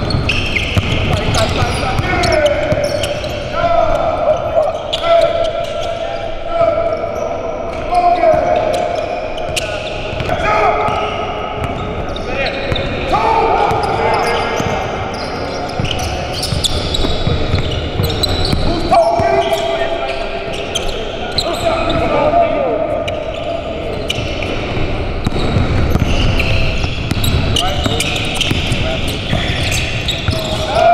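Basketballs bouncing on a hardwood gym floor with many sharp knocks during play, echoing in the hall, under players' untranscribed calls and chatter.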